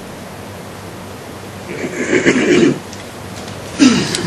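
A brief, breathy chuckle of laughter about two seconds in, against quiet room tone.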